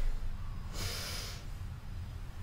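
A person's forceful breath through the nose during leg-lift yoga exercise: the end of a strong breath right at the start, then one hissing rush of air lasting about half a second, about a second in.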